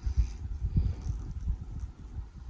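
A person drinking from a glass bottle, the gulps and swallows heard as low, irregular soft thumps close to the microphone.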